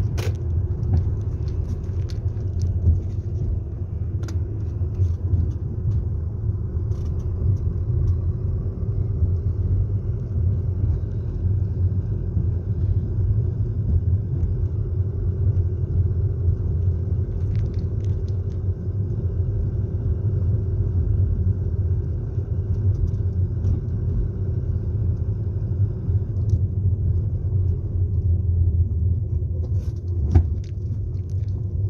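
Steady low rumble of a car driving slowly, heard from inside the cabin: engine and road noise, with a few faint scattered clicks.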